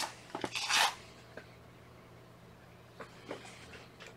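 Faint rustling of synthetic dubbing fibres being pushed by hand into a fly-tying dubbing loop, with one brief louder rustle just under a second in and a few small ticks later, over a low steady hum.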